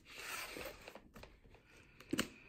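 A knife blade slicing through packing tape on a cardboard box: a short rasping scrape in the first second, then a few faint scrapes and ticks.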